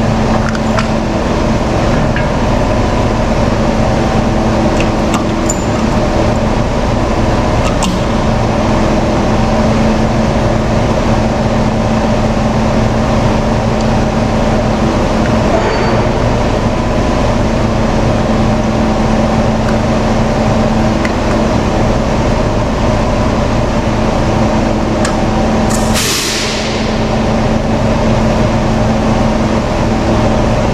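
A heavy truck tractor's diesel engine running steadily at idle while parked, with a constant low hum and rumble. About 26 seconds in, a short sharp burst of compressed air hisses out.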